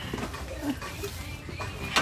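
A few faint, short vocal sounds over a low, steady background hum.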